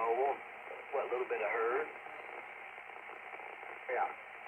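Voices of ham radio operators heard through a 2-metre amateur radio transceiver's speaker, thin and band-limited, with short bits of speech at the start and again about a second in. Then comes about two seconds of steady channel hiss with no voice, and speech returns just at the end.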